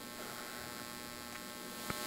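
Steady electrical mains hum and buzz, a low even drone with many overtones picked up through the microphone and sound system, with a faint click near the end.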